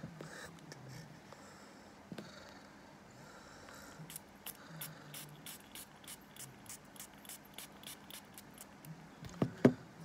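Glass perfume spray bottle being pumped repeatedly, a quick series of short spritzes, followed by two loud knocks near the end.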